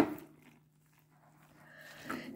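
Near silence with a faint low hum, after a brief click at the very start.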